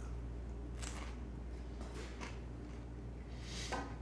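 Faint chewing of a bite of crisp toast with peanut butter and pickles: a few soft, short mouth noises, a little stronger near the end, over a low steady hum.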